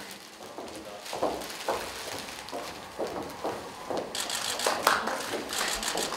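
Quiet hall ambience with faint murmur and scattered sharp clicks and rustles, growing busier about four seconds in.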